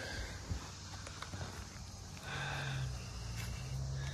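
Footsteps crunching faintly on dry leaf and pine-needle litter, with a few light clicks, then a low steady hum for a little under two seconds in the second half.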